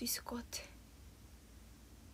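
A woman's voice saying a few quiet syllables in the first half second, then low room tone.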